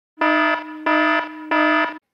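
Warning-alarm buzzer sound effect sounding three times, about two-thirds of a second apart, each blast a steady tone that sags in level before the next.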